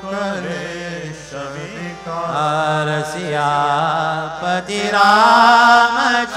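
Hindu devotional chanting: a voice sings a mantra, sliding in pitch over a steady low drone, and grows louder near the end.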